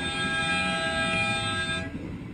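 A vehicle horn held in one long, steady blast that cuts off near the end, over the low rumble of idling engines.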